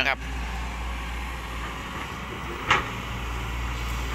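SANY hydraulic excavator's diesel engine running with a steady low hum while it works, with one short knock a little under three seconds in.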